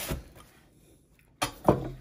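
Large chef's knife cutting through a flaky pasty and knocking on a wooden chopping board, then a second sharp knock about a second and a half in as the blade meets or is laid on the board.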